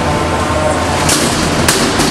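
Two sharp metal bangs, about a second in and half a second apart: one combat robot slamming into another and punching it over, over a steady noisy arena background.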